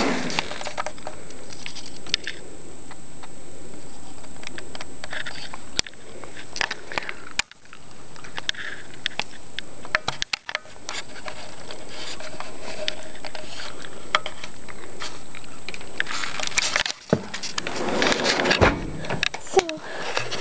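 Steady outdoor rushing noise with scattered clicks and knocks from the camera being handled, and a burst of louder handling noise near the end.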